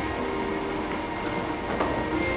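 Background worship music, a quiet passage of sustained, held chords.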